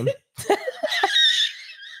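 A woman laughing hard, in short bursts that turn into a high, breathy squeal about a second in.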